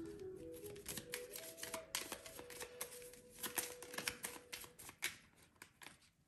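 A deck of oracle cards being shuffled by hand: a quick run of soft card clicks and riffles that thins out near the end, under a faint held musical note.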